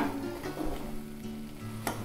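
Wheat halwa sizzling in ghee in a pan as it is stirred with a metal spatula, with a sharp knock at the very start and another near the end.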